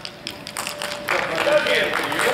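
Indistinct voices in a large hall, with scattered light taps and clicks starting about half a second in.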